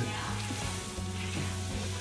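Sausage, onions and butter sizzling in a cast iron skillet while a spoon stirs flour through them to start a roux, cooking the raw flour in the hot fat. Steady background music plays underneath.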